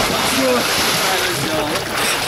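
Icy water in an ice-hole font splashing as a bather ducks under and comes back up, with voices over it.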